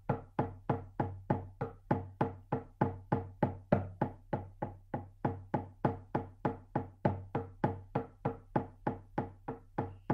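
A shamanic drum beaten in a steady, even rhythm of about four strikes a second, each beat ringing briefly with a low tone. The drumming stops just before the end.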